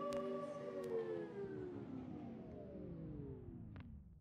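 Cassette tape in a boombox winding down as its power is cut: a held chord of several tones slurs downward in pitch, sinking faster toward the end as it fades out. A few faint clicks are heard along the way.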